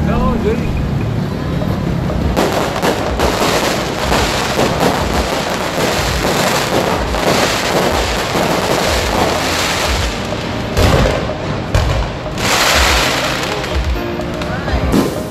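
Aerial fireworks bursting overhead: a continuous dense crackle of many small reports, with a few heavier booms in the second half, over the voices of a crowd.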